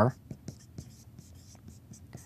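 Dry-erase marker writing on a whiteboard: a run of short, faint strokes as a word is written out.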